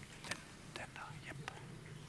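Faint, low-voiced talk away from the microphone, with a few short clicks over a steady low hum.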